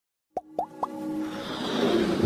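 Three quick rising plop sound effects about a quarter second apart, over a building electronic swell, as part of a motion-graphics intro.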